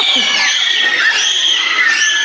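A group of young children shrieking and shouting excitedly, several high-pitched voices overlapping.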